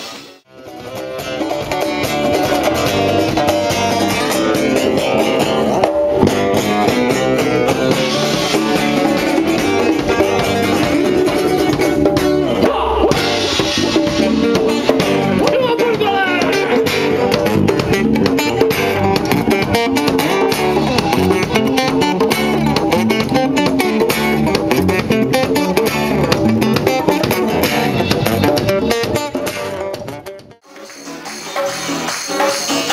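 Live instrumental funk-Latin band playing: guitar lines over electric bass and hand-drum and drum-kit percussion. The music dips out and back in just after the start, where one recording joins the next.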